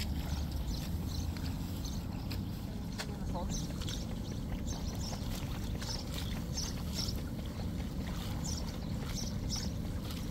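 Rice seedlings being pulled by hand from a flooded nursery bed: short, repeated splashing and rustling of wet stems and water, over a steady low rumble.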